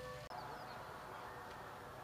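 Faint, steady outdoor background noise with no clear single source, broken by a brief dropout at an edit cut about a quarter of a second in.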